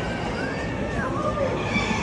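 A barnyard fowl's call that rises and falls in pitch for about a second, heard over the chatter of people.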